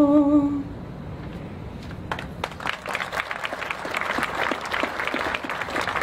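A singer's long final held note, with a slight vibrato, ends in the first second; about two seconds in, a crowd begins applauding, the clapping growing and carrying on.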